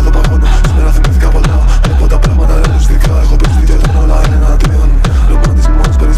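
Techno DJ mix: a heavy kick drum on every beat, a little over two a second, with short high percussion ticks and sustained synth tones over it.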